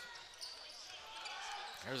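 Faint court sound of a college basketball game in a near-empty arena, with the ball being dribbled on the hardwood during a fast break. A commentator starts talking near the end.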